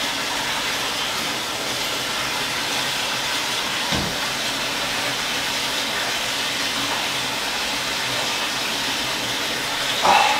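Bathtub filling from the faucet: a steady rush of running water, with one soft knock about four seconds in.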